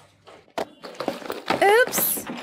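A few light knocks, spaced unevenly, from a sound effect in a recorded listening dialogue, followed near the end by a voice calling out with rising pitch.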